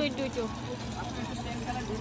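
Indistinct chatter of voices in a crowded market stall over a steady low rumble of background noise, with one voice trailing off at the start.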